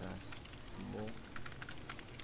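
Typing on a computer keyboard: a quick run of key clicks, densest in the second half. A short murmured voice sound comes about a second in.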